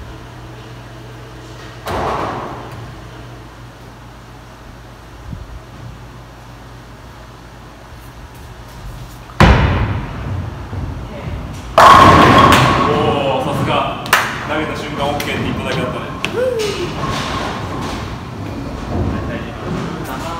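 A bowling ball dropping onto the lane with a sharp thud about halfway through, then, a little over two seconds later, crashing into the pins: the loudest sound, followed by the pins clattering as it dies away.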